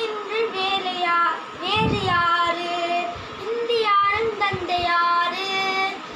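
A boy singing solo, in phrases with long held notes.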